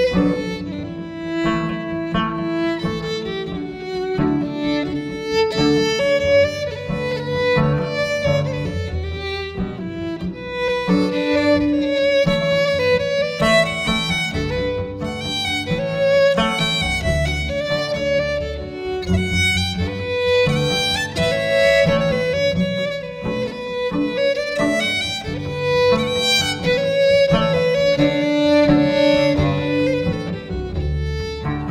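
Live fiddle, cello and acoustic guitar playing a lively Scottish-style fiddle tune. The fiddle carries the melody over the cello's low line and the guitar's accompaniment, without a break.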